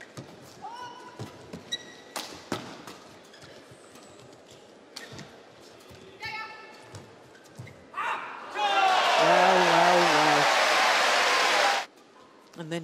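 Badminton rally: sharp racket hits on the shuttlecock with shoe squeaks on the court. About eight and a half seconds in, the arena crowd cheers and shouts loudly as the point is won; the cheering cuts off suddenly near the end.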